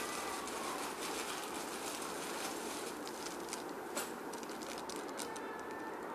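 A thin plastic bag rustling and crinkling as a hand rummages inside it, with scattered crackles over a steady hiss.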